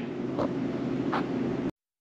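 Quiet room tone with a steady low hum and two faint short noises. It cuts off abruptly to dead silence near the end.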